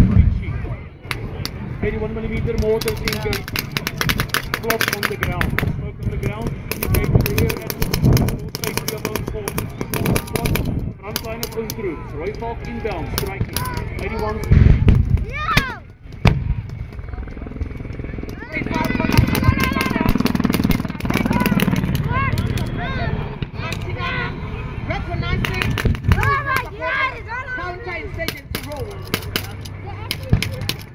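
Mock-battle gunfire: rapid shots and bursts of small-arms and machine-gun fire with explosions, the loudest blast about halfway. Voices can be heard among the shots in the second half.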